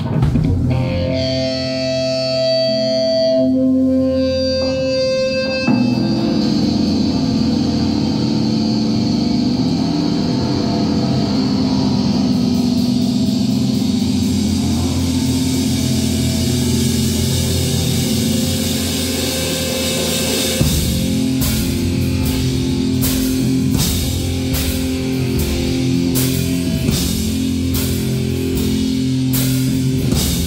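Live pop-punk band starting a song: it opens on held, ringing electric guitar and bass notes, and about twenty seconds in the drum kit comes in with a steady beat and the full band plays.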